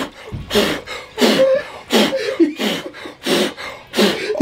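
A man breathing hard in ice-cold water, giving forceful, voiced exhales about every two-thirds of a second. This is the deliberate hard-exhale breathing used to ride out the cold shock of a plunge.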